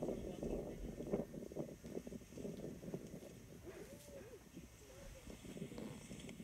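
A safari video's soundtrack playing faintly through a laptop speaker: muffled voices over a low, steady background noise.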